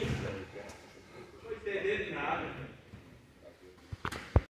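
Indistinct men's voices talking in a large hall, in two short stretches at the start and in the middle, with quieter gaps between.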